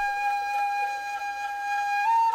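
Background music: a single woodwind note, flute-like, held long and steady.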